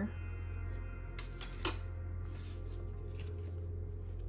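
Soft background music over a steady low hum, with two short papery flicks of postcards being handled about a second and a half in.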